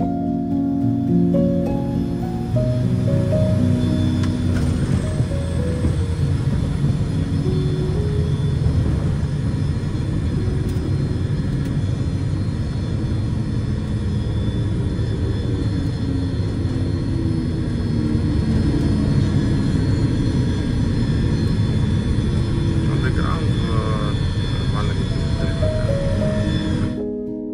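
Cockpit noise of a Cessna 421C Golden Eagle's twin geared, turbocharged six-cylinder piston engines and propellers during the landing, steady throughout, mixed with background music.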